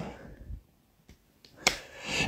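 A pause with almost nothing to hear, broken by one short, sharp click about one and a half seconds in and a fainter tick earlier.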